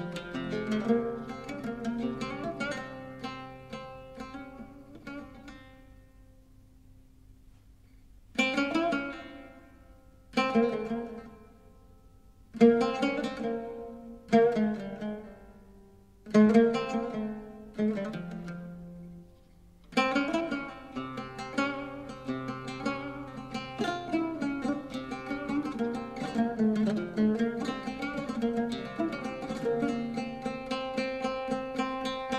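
Solo oud improvisation, a taqsim in maqam Rast, plucked with a plectrum. A run of notes fades to a near-pause about six seconds in, then comes a series of single phrases, each struck and left to ring, and from about twenty seconds on a dense, fast stream of notes.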